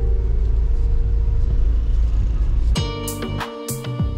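Deep, steady rumble of a car's engine and road noise heard from inside the cabin, under background music. About three seconds in, the rumble drops away and the music takes over: plucked guitar-like notes with sharp drum hits.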